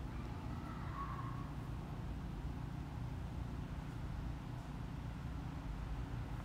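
Steady low background hum, with a faint short tone about a second in.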